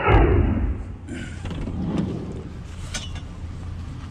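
A heavy thud from a minivan's sliding side door at the start, then a low steady rumble with a few light knocks and clicks about one, two and three seconds in.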